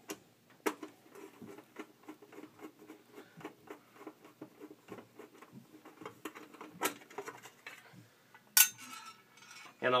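Sheet-metal access cover on an electric water heater being worked loose and pulled off by hand: faint scraping and light taps, a couple of sharp clicks, and one loud metallic clank about three-quarters of the way through.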